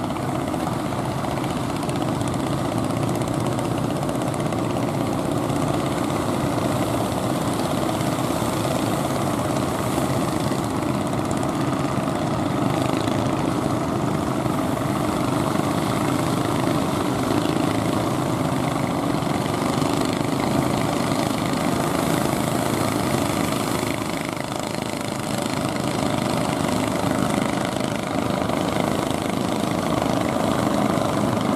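Engines of several wooden fishing boats running steadily as the boats motor in through the surf, a continuous mechanical drone that eases slightly for a couple of seconds near the end.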